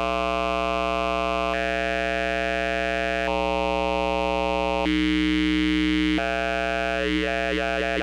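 A held synthesizer note through the Kodiak Morph Filter formant filter, staying on one pitch while its vowel-like colour switches in steps about every one and a half seconds. Near the end the colour wavers and glides between vowels.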